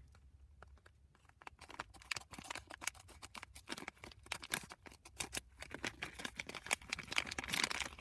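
A plastic foil Lego minifigure blind bag crinkling and crackling in the hands as it is squeezed and opened, in many small irregular crackles from about a second and a half in.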